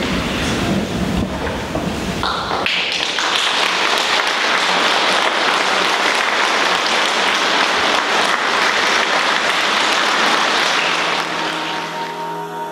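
Audience applauding: a dense, steady clapping that starts about three seconds in and stops shortly before the end.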